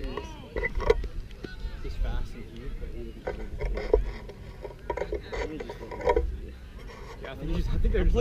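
Scattered shouts and voices of players and teammates calling across an open field during play, with a low rumble of wind on the microphone.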